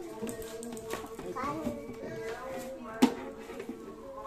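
Children's voices talking, with music in the background and a single sharp knock about three seconds in.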